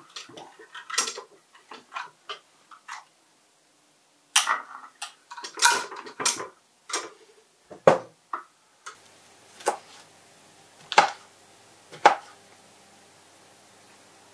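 Metal pots and pans clattering and knocking together as a pan is pulled from a stacked wire pan rack and handled on the hob. About nine seconds in, a faint steady hum starts, followed by three single sharp knocks about a second apart.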